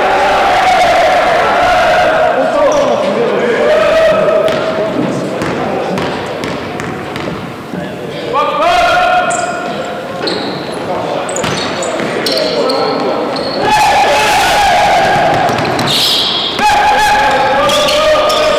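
Basketball bouncing on a hardwood gym floor during play, with players shouting and calling out to each other on court.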